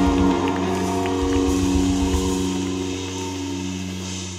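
Live rock band holding a sustained chord at the end of an intro, electric guitar and bass tones ringing and slowly fading away.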